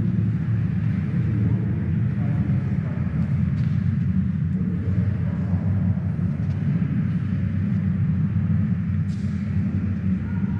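A steady low rumble that holds an even level throughout.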